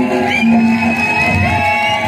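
Music: a song performed live, with a voice holding long notes that slide in pitch over steady accompaniment.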